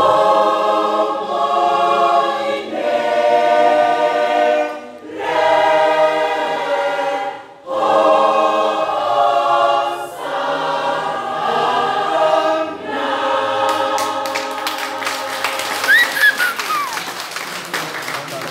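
Mixed choir singing unaccompanied, holding full chords in phrases broken by short breaths. Near the end, while the voices hold a last chord, clapping breaks out.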